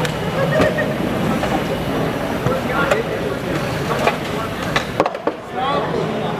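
Background chatter of onlookers over steady noise, with a few sharp clicks; the loudest click comes about five seconds in.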